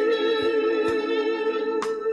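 Live worship song: a female singer holds a long note with vibrato over guitar and organ backing.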